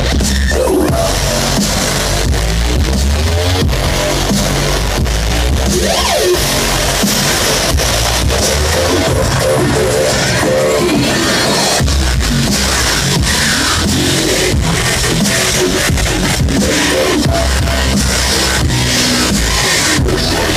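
Bass-heavy electronic dance music (dubstep) played loud through a concert sound system, with a deep sub-bass and a steady beat. It is heard from the audience at a live show.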